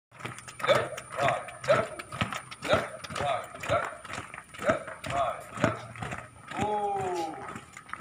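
A drill leader shouting a marching cadence count, about two short calls a second, over the footsteps of a squad marching on paving stones. Near the end comes one long, drawn-out command falling in pitch.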